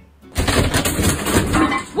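A person crashing down through a ceiling. Ceiling board breaks and debris clatters down in one loud, dense crash that starts about a third of a second in and lasts about a second and a half.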